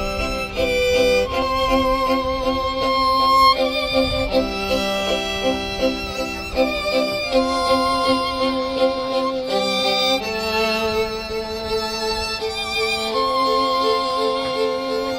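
Violin bowed in a slow melody of held notes that change every second or two, over a lower part that pulses in a steady rhythm.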